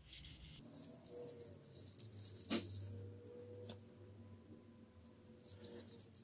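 Faint clicks of metal knitting needles as stitches are knit, two of them clearer a little past the middle.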